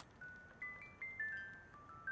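Built-in music box of a vintage Japanese Aria musical lighter playing a faint tinkling tune of single high ringing notes, about four a second, after one sharp click at the start.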